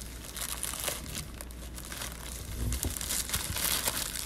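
Clear plastic wrap crinkling as it is peeled and pulled off a metal plaque, with irregular crackles that grow louder near the end.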